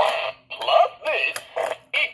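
Gemmy Fart Guy animated novelty toy, just set off by pressing its button, playing its recorded routine through its small built-in speaker: several short pitched sounds that bend up and down, with brief gaps between them.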